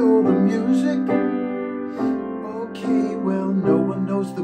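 Grand piano playing chordal accompaniment, with a man singing a melody over it.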